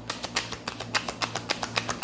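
A tarot deck being shuffled by hand: a quick, even run of card clicks, about nine a second.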